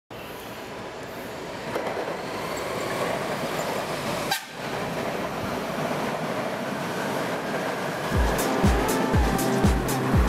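Passenger train running on the tracks below, a steady rushing rumble of wheels on rail that grows louder as it comes through and passes. About eight seconds in, music with a steady beat comes in over it.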